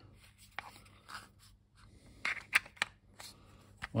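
Handling noise from a clear plastic cartridge case as a CC-40 ROM cartridge is pushed into it and the hinged lid is shut: a handful of small plastic clicks and scrapes, sharpest about two and a half seconds in.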